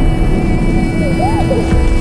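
Film trailer score and sound design: a dense deep rumble under a sustained held note, with a few short sliding tones partway through.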